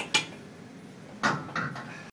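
A few sharp metallic clinks and clanks: two close together at the start, then a louder cluster a little past a second in.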